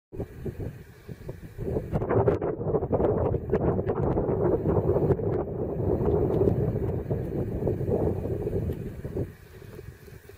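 Wind buffeting the camera microphone in rough, gusting rumbles. It drops away abruptly about nine seconds in.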